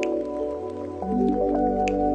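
Relaxing instrumental music with sustained chords. A deep bass note comes in about a second in, and a short high plink sounds at the start and again near the end.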